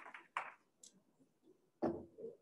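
Quiet room tone with a few faint ticks, then one sharp knock near the end.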